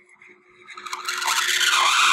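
Pen stylus rubbing across a drawing tablet as a long line is drawn, a scratchy sound that starts about half a second in and holds steady.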